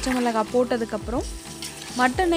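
A woman's voice talking, with a metal spoon stirring raw marinated mutton, garlic and onions in an aluminium bowl.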